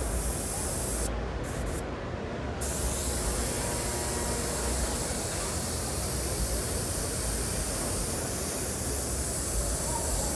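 Airbrush hissing as it sprays paint with compressed air. The hiss breaks off briefly about a second in, then runs steady from about three seconds in.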